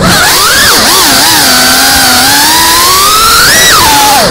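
FPV racing quadcopter's brushless motors whining, the pitch swinging up and down with the throttle: a few quick dips early on, then a steady climb to a high peak shortly before the end, dropping off sharply.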